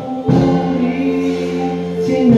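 Live Christian worship song: voices holding a long sustained note over Yamaha electric keyboard accompaniment, entering after a brief dip just at the start.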